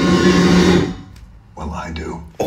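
Movie soundtrack: a sustained low musical drone fades out about a second in, and a brief spoken line follows near the end.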